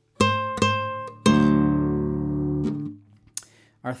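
Nylon-string flamenco guitar in rondeña tuning (D A D F# B E). Two single high notes are plucked, then a full chord is struck with the thumb on the low sixth string and a strong middle-finger free stroke. The chord rings for about a second and a half, then is cut off.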